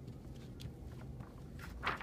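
Sheet of cut-out paper rustling as it is picked up and pressed flat with the hands on a table, with a louder crinkle near the end.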